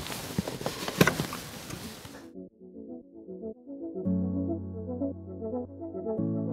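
A couple of sharp clicks and plastic handling noise as the support leg of a child car-seat base is set in position against the car floor. About two seconds in, this cuts off and background music takes over, with held low notes.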